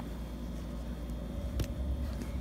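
Low steady background rumble with faint clicks near the start and about one and a half seconds in.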